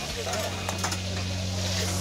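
Background noise at a busy food counter: a steady low hum with a few sharp clinks and faint chatter from customers.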